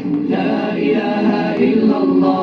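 Vocal music: a group of voices singing a chanted melody together, without instruments.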